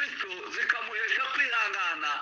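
Speech: a person talking, heard through the thin sound of an online meeting line.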